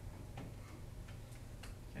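A few faint, sharp clicks, four in about two seconds at uneven spacing, over a low steady room hum.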